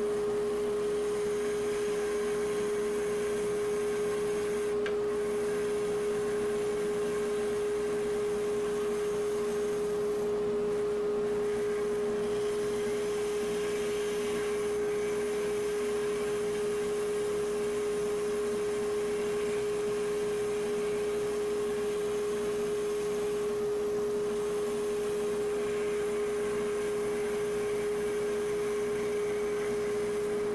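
Spindle sander running with a steady, pure-toned hum as its sanding tube sands a notch into a plywood workpiece.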